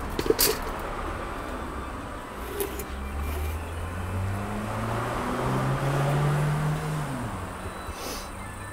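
A motor vehicle's engine running nearby over a low steady rumble, its pitch rising over several seconds and then falling away near the end; a few short clicks near the start.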